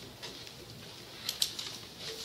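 A pause in the talk with quiet room background noise and two short sharp clicks close together a little over a second in.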